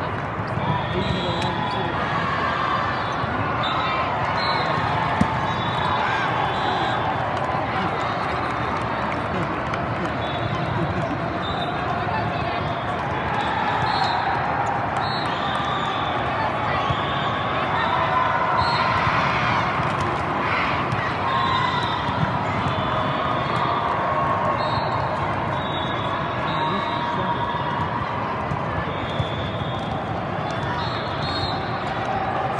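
Ambience of a busy volleyball tournament hall: many voices talking and calling over one another, with scattered thuds of volleyballs being hit and bouncing across the courts.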